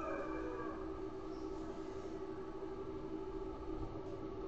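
A faint, steady hum at two fixed pitches under low background noise, unchanging throughout.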